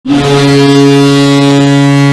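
HC Lugano's ice hockey goal horn sounding one long, loud, deep blast that starts abruptly, signalling a goal scored.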